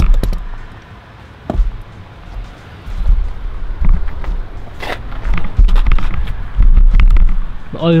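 Handling noise from a camera being picked up and carried: heavy low rumbling thumps on the microphone in several surges, with a few sharp clicks and knocks.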